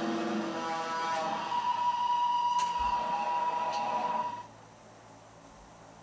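Stratocaster-style electric guitar playing a few plucked notes, then one high note held for about three seconds that cuts off suddenly about four and a half seconds in, leaving only a faint low hum.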